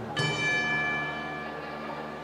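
A single bell-like strike on the band's tuned metal percussion, ringing out and fading over about a second and a half, over soft held tones from the band.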